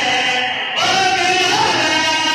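Amplified male voices singing a devotional qasida: a lead reciter on a microphone through a loudspeaker system, with other voices joining in. The singing briefly thins about half a second in, then carries on.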